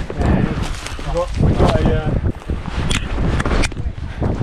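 Brief snatches of voices over rustling, scuffing handling noise and low wind rumble on a body-worn microphone while people climb over a wire fence. Two sharp clicks come near the end.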